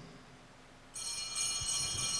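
Altar bells ringing: a bright, shimmering cluster of high tones that starts suddenly about a second in, after a near-silent pause, marking the blessing with the Blessed Sacrament.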